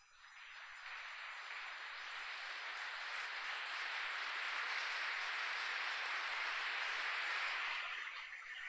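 A large crowd applauding: dense clapping that swells over the first second or two and then holds steady.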